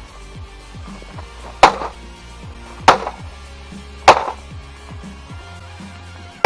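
Three heavy blows, about a second apart, smashing into the white plastic casing of a Mac computer, each a sharp crack, over background music.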